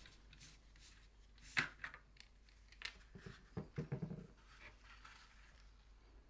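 Faint clicks and light rattling of a screwdriver and the thin metal shield of a Fluke 8021B multimeter being freed and lifted off its circuit board. There are a couple of single clicks, then a short cluster of taps a little past halfway.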